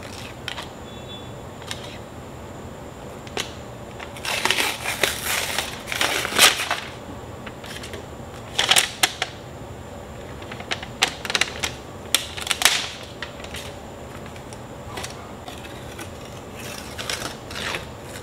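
Scorched sublimation paper crinkling and crackling in several bursts as it is peeled off a freshly pressed mug, with a few sharp clicks between them.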